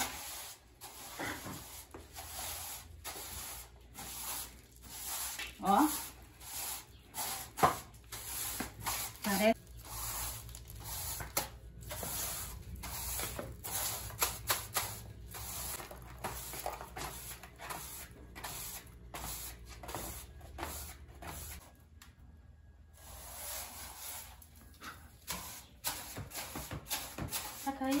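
Plastic-bristle broom sweeping a painted cement floor: a long run of short, scratchy brushing strokes.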